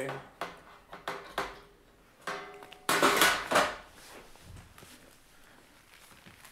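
Handling noise of gear being moved: a few light knocks and clicks, then a louder rattling clatter about three seconds in, as an iPad is set aside from a metal music stand and a tangle of cables is picked up.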